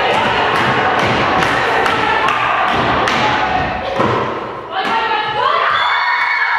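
A string of thuds from a volleyball being served and struck during a rally, over girls' shouting voices, echoing in a gymnasium.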